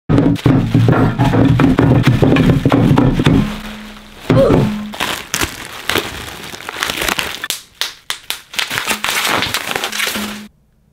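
Plastic mailer bags and bubble wrap crinkling and crackling as bottles are unwrapped, over music with a heavy bass that is strongest in the first few seconds.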